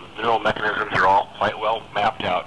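Speech only: a man talking, the voice sounding thin, with little top end.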